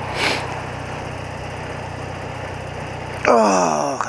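BMW motorcycle engine running steadily, heard through a helmet-mounted mic, with a sharp sniff about a quarter-second in. Near the end comes a loud voiced sigh or groan that falls in pitch.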